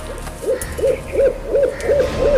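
An owl hooting in a quick run of short notes, each rising and falling in pitch, about three a second, beginning about half a second in.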